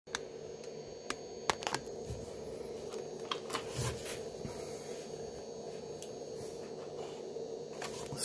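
Quiet room tone with a steady low hum, broken by a few irregular faint clicks and rustles of a handheld camera being moved and handled.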